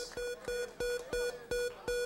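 The Price is Right Big Wheel spinning down, its pegs clicking against the flipper pointer about three times a second and slowing slightly. A steady held tone sounds behind the clicks.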